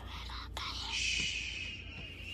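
A person whispering close to the microphone: a breathy hiss that swells about a second in, over a steady low hum.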